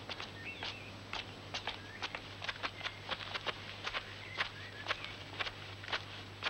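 Footsteps of two people walking on outdoor stone steps: a run of quick, sharp steps, about four a second. A few short high chirps and a low steady hum sit beneath them.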